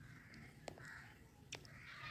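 Near silence, with about three faint, short bird calls evenly spaced and two light clicks, one about a third of the way in and one past halfway.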